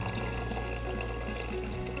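Water pouring steadily from a glass pitcher into a rice cooker pot of rice and quinoa, filling it to the measuring line. Background music plays underneath.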